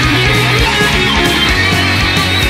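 Southern metal band playing an instrumental passage led by distorted electric guitar, at full loudness.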